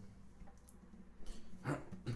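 Quiet room tone with a steady low hum and a faint brief rustle, then a man's voice starting near the end.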